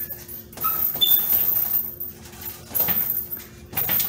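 Gloved punches landing on a hanging heavy punching bag, a few separate hits with short gaps between them, with the bag's metal hanging hardware jingling.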